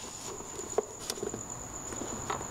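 Faint handling noises of hands working behind a scooter's plastic front fender, with a few light taps and clicks.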